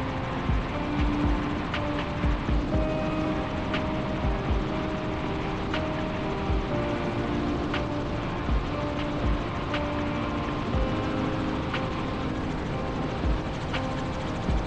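Steady noise of a helicopter in flight, engine and rotor running evenly, heard with background music of short held notes and low beats laid over it.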